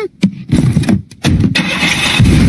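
Cartoon sound effect of a car engine cranking and starting, after a short click; the engine noise grows louder about a second in.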